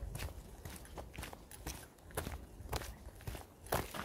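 Sneakers stepping on a gravel trail, at about two steps a second.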